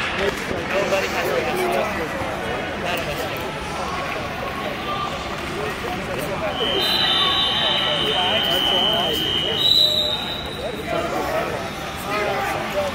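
Hubbub of many voices in a tournament hall. About six and a half seconds in, a steady high-pitched signal tone sounds for about three seconds, followed by a brief higher tone, as the wrestling bout gets under way.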